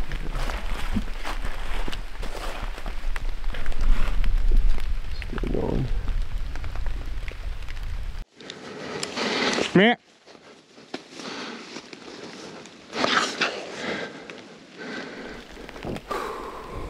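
Rain falling on leaves and clothing, with a steady low rumble of wind on the microphone. About eight seconds in the sound cuts to a quieter stretch with a brief voice.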